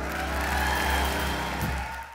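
A jazz big band holds its final sustained chord while the audience applauds and cheers, with a brief low hit near the end.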